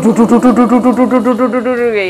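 A woman's voice holding one long 'ooo' on a steady pitch, with a fast, even wobble of about eight pulses a second.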